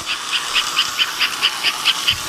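American Flyer 302 toy steam locomotive running on its track, giving a steady series of hissing puffs, about four or five a second.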